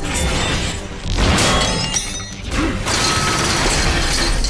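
Dramatic TV action-scene soundtrack: music with loud, noisy sound-effect surges about a second in and again near three seconds.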